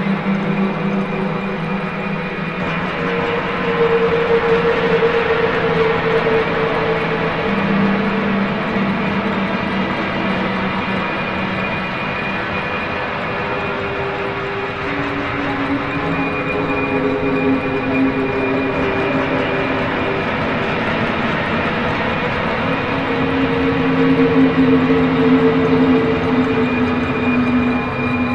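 Slow ambient background music of long held tones that change pitch every few seconds, growing a little louder near the end.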